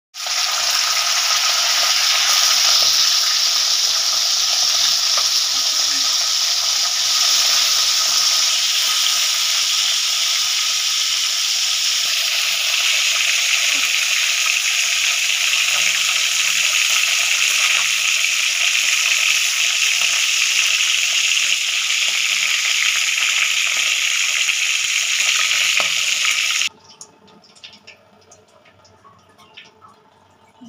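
Chicken pieces frying in hot oil in a wok: a loud, steady sizzle that cuts off suddenly near the end.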